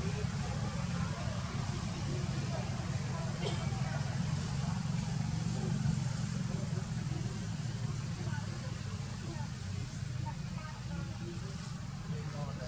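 A steady low rumble under faint, indistinct background sounds.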